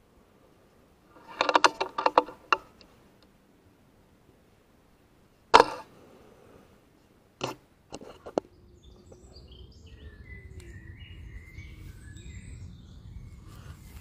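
A Brocock Sniper XR .22 PCP air rifle fired once, a single sharp crack about five and a half seconds in and the loudest sound, with a run of quick clicks a few seconds before it and a few single clicks a couple of seconds after. Birds chirp faintly in the second half.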